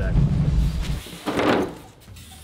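A sheet of Foamular extruded-polystyrene foam insulation board being pulled off a stack on a store shelf: a low handling rumble, then a short scraping rush of foam sliding against foam about a second and a half in.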